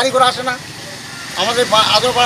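A man speaking, pausing for about a second midway, over a low steady background of road-traffic noise.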